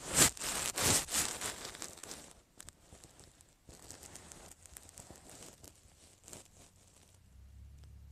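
Rustling and crackling handling noise from a phone's microphone as the phone is moved about. It is loudest in the first two seconds, then fades to scattered faint crackles that stop about seven seconds in.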